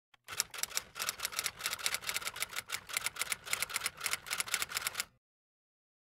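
Typewriter-like key clicks typing fast, about six or seven a second, cutting off suddenly about five seconds in.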